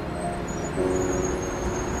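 Soft background music of long held notes, shifting to a new lower note a little under a second in, over a low steady rumble of distant city traffic.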